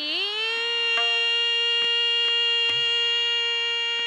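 Female Hindustani classical vocalist sliding up into a long note and holding it at one steady pitch, over a tanpura drone whose plucks come through faintly.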